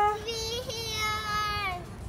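A child's high voice holding one long sung note that rises slightly, then fades out near the end.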